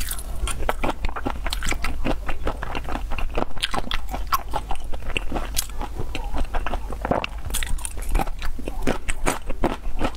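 Close-miked mouth sounds of eating raw tiger shrimp in chili oil: wet biting and chewing, a dense, irregular run of sticky clicks and smacks.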